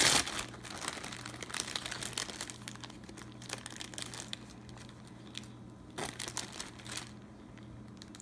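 Clear plastic deli-meat bag crinkling and rustling in irregular handfuls as turkey slices are pulled out of it, loudest at the very start, thinning out after about four seconds, with another flurry around six seconds in.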